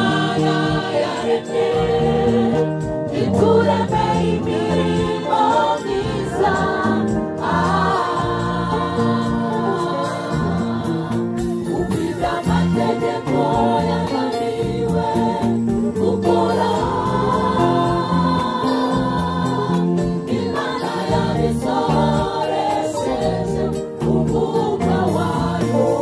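Gospel choir singing in harmony into microphones, accompanied by electronic keyboards.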